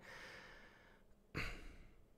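A man breathing into a close microphone: a faint breath trailing off at the start, then one short breath or sigh about a second and a half in.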